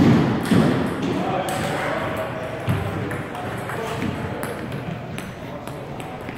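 Table tennis ball clicking sharply off paddles and the table during a rally, in a series of scattered hits, with voices in the background.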